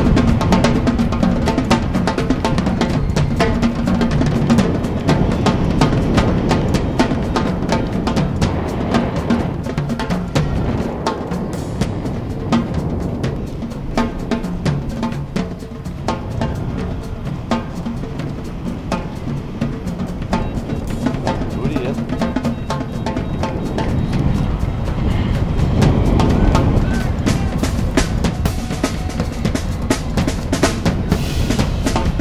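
Wind rushing and buffeting on an action camera's microphone in flight. It runs unbroken, eases off somewhat in the middle and grows stronger again near the end.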